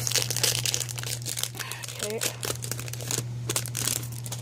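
Foil Pokémon booster pack wrapper being crinkled and torn open by hand: a dense run of crackling rustles that thins out in the last second, over a steady low hum.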